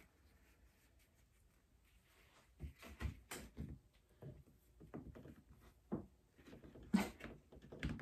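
Irregular light knocks and clacks of a screwdriver and a rubber flip-flop sole being handled on a desktop, starting about two and a half seconds in.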